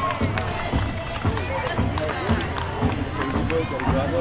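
Horses' hooves clopping on asphalt as they walk past, mixed with people talking nearby.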